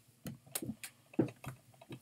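A shrink-wrapped plastic DVD case being handled and turned over: about ten faint, irregular clicks and taps of plastic in two seconds.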